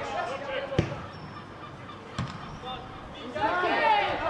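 Two thuds of a football being kicked, about a second and a half apart, with players shouting on the pitch and one loud call near the end.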